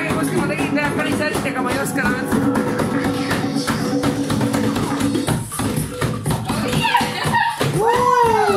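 Live hand drum and small drum kit playing a quick dance rhythm, with voices over it and a rising-then-falling whoop near the end.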